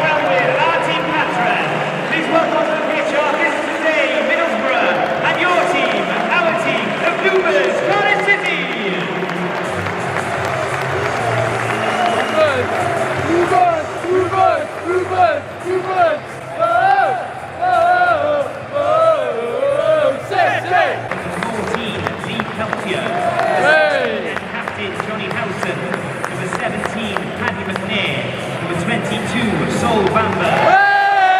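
Football stadium crowd clapping and singing together in many voices, with a rhythmic chant that pulses through the middle stretch.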